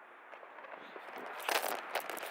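Low rustling and scraping handling noise from a handheld camera being carried on foot, with a short, louder crunching burst about a second and a half in.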